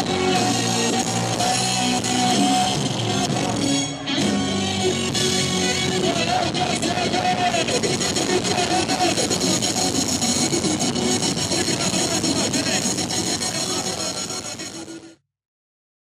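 Rock band playing live on a club stage, with guitar and keyboard. There is a brief dip about four seconds in, then the music fades and cuts off to silence shortly before the end.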